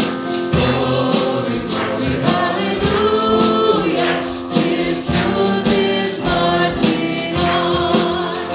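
Live church worship band playing a song: several voices singing together into microphones over drums and keyboard, with a steady percussive beat.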